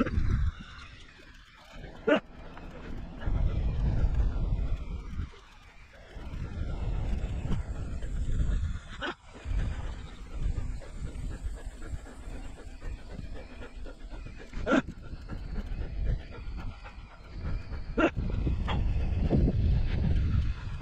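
Wind rumbling over the microphone in gusts as a bicycle rides along a rough gravel track, with a few sharp knocks as the bike jolts over bumps.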